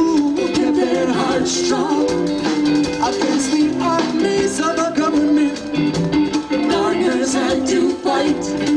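Live band playing amplified music on stage, with electric guitars, drums and singing.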